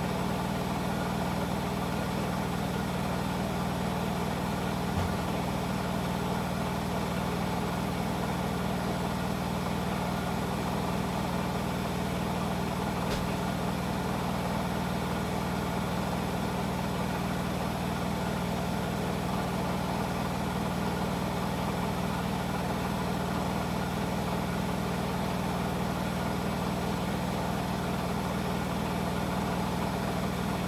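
Hotpoint washing machines on a spin-only cycle, drums spinning at high speed, up to 1200 rpm: a steady hum of motors and drums. A faint click comes about five seconds in and another about thirteen seconds in.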